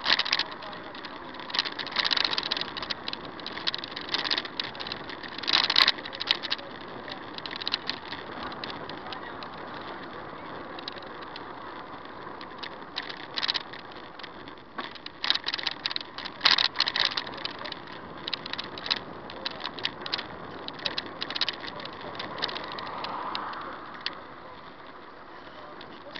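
Car cabin noise picked up by a dashcam as the car drives slowly, with a steady road hiss and frequent irregular rattles and clicks.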